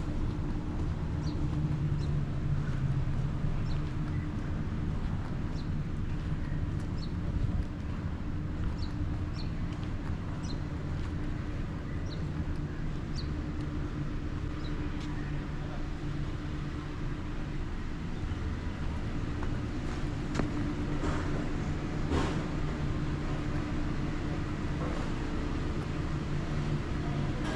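Steady low mechanical hum with a pitched drone, and short high bird chirps scattered through the first half. A few brief clicks or knocks come near the end.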